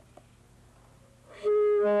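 Near silence, then about one and a half seconds in a saxophone sounds a held note, played as an overtone with a low-note fingering and without the register (octave) key. Shortly after, a lower tone about an octave beneath sounds along with it.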